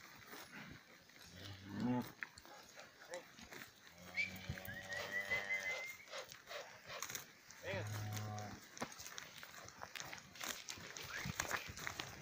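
Black Angus heifers mooing: a short low call about a second and a half in, a long one at about four seconds, and another near eight seconds.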